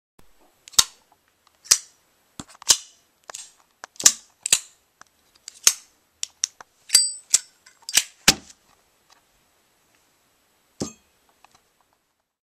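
A Spyderco Paramilitary 2 folding knife being flicked open and snapped shut over and over: about fifteen sharp metallic clicks, irregularly spaced over the first eight seconds, then a single click near the end.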